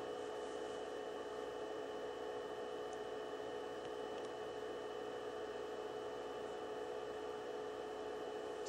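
Steady room hum with a faint hiss, holding a few fixed pitches, and two faint short clicks a few seconds in.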